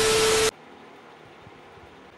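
Television static with a steady beep, a glitch transition sound effect laid over colour bars. It cuts off abruptly about half a second in, leaving only faint steady background hiss.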